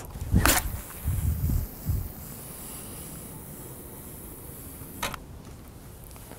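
A fishing rod swishing through a long-distance cast about half a second in, then a faint high hiss of line running off the reel as the lead flies out, fading over the next few seconds. A short sharp click comes about five seconds in.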